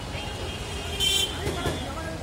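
Busy street traffic: a steady low engine rumble with voices of passers-by, and a short high-pitched vehicle horn toot about a second in.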